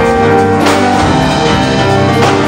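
Live band music: sustained keyboard chords over a steady bass line and a drum kit, with a cymbal crash about two-thirds of a second in.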